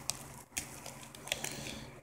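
Faint crinkling of a clear plastic bag being handled, with a few light crackles.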